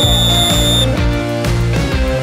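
Referee's whistle sounding one steady blast that stops about a second in, over background music.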